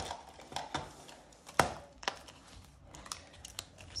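A plastic ring binder being handled and opened on a stone worktop: plastic covers rustling, with several light clicks and knocks and one sharp, loud knock about one and a half seconds in.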